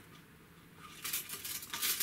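A fishing rod's quiver tip being slid into its clear plastic storage tube: a dry, high-pitched scraping rustle that starts about a second in.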